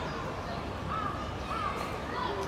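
A crow cawing, two short calls about a second in and a little later, over steady low background noise.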